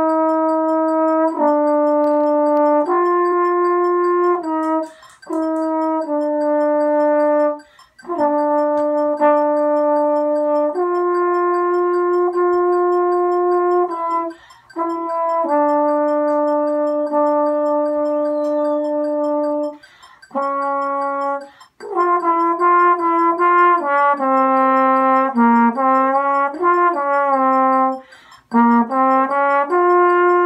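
Solo trombone playing a slow line of long held notes, with short breaks for breath every few seconds. In the last third it moves into a quicker passage of shorter, changing notes.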